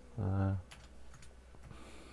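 Computer keyboard keys tapped a handful of times as letters are typed, light separate clicks. A short wordless vocal sound from a man comes just before the keystrokes.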